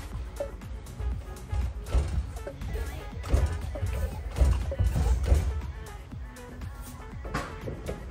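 Background music over the low thuds of a Showa BFF motorcycle fork leg being pumped by hand in short strokes. The strokes work freshly poured fork oil between the inner and outer tubes.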